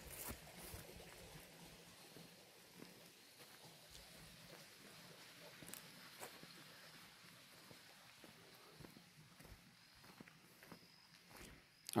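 Near silence: faint outdoor ambience with a few soft, irregular ticks.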